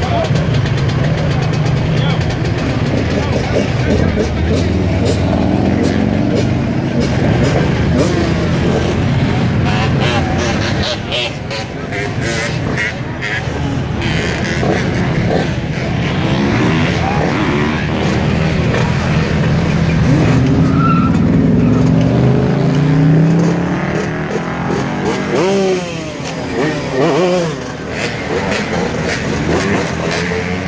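Dirt bikes and other vehicles revving again and again, their engines rising and falling in pitch, over the talk of a crowd.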